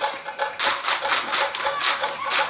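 Group of Samoan dance performers clapping in unison in a fast, even rhythm of sharp claps, about five a second, starting about half a second in.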